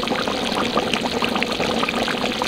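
Water being poured into a hot pan of frying chicken pieces, sizzling and bubbling with a dense, steady crackle.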